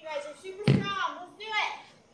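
Short, high-pitched voices calling out, with one sharp thump about two-thirds of a second in as a hand-held dumbbell is set down on the floor mat during a renegade row.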